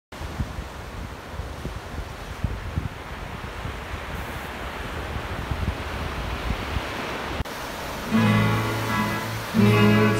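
Surf breaking on a sandy beach, with gusty wind rumbling on the microphone. This cuts off suddenly about seven and a half seconds in, and acoustic guitar chords begin about a second later.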